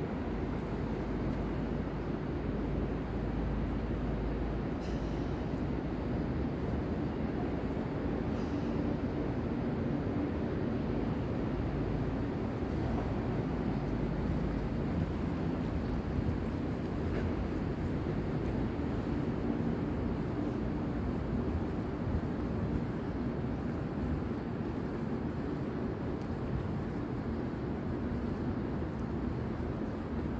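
A steady low rumble with a faint hum in it, unchanging throughout.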